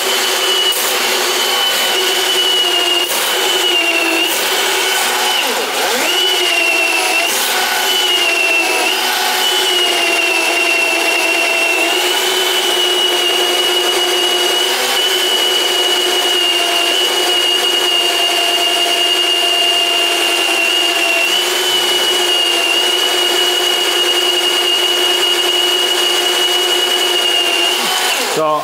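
Milwaukee cordless sectional drain machine running, spinning 5/8-inch cable that is working at the blockage in the drain. It gives a steady whine that dips in pitch several times under load in the first several seconds, with a few knocks, then holds level until the motor stops at the very end.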